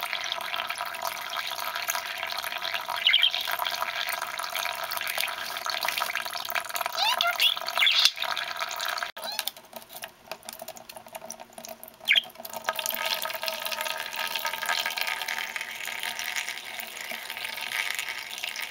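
A thin stream of tap water running into a shallow plastic bath dish while a budgie splashes in it. The running water falls away for a few seconds past the middle and then comes back. A few short budgie chirps sound over it.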